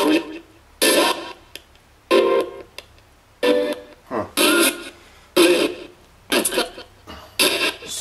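Homemade ghost box sweeping through radio stations: about ten short fragments of broadcast music and voice, each cutting in suddenly and fading away, roughly one every second. The operator takes the fragments for spirit replies, hearing the words "turn it... this up".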